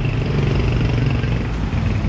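A motorcycle engine idling steadily, with street traffic noise around it.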